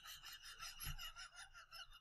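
A woman's faint, breathy, wheezing silent laugh: a quick run of soft rhythmic pulses of breath with a thin whistle in it.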